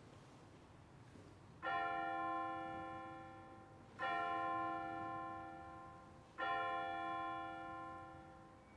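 Altar (sanctus) bell struck three times, about two and a half seconds apart, each ring dying away slowly. It marks the elevation of the chalice at the consecration of the Mass.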